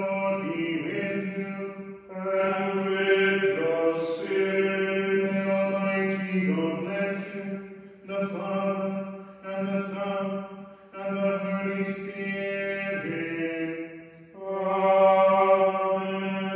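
Unaccompanied liturgical chant sung by voices in a reverberant chapel: long held notes in phrases, with brief breaks for breath a few times.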